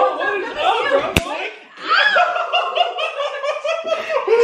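People laughing hard, the second half a quick, rhythmic run of laughs, with one sharp click about a second in.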